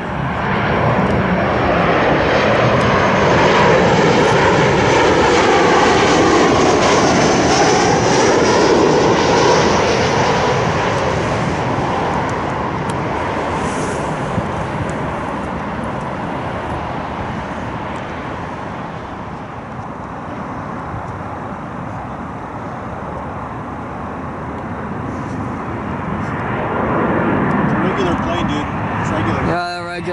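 Jet roar of a CanJet Boeing 737-800's turbofans passing low overhead on short final, swelling loud within the first few seconds with a swirling, phasing sound, then fading as it moves off toward the runway. Near the end a second jet's roar builds as the next airliner approaches.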